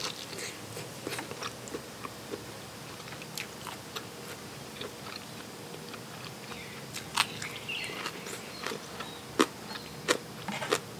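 Close-miked eating: chewing and biting with short crisp crunches and wet clicks from a mouthful of rice-vermicelli salad with raw shrimp and crunchy bitter gourd, the sharpest crunches about seven and nine and a half seconds in.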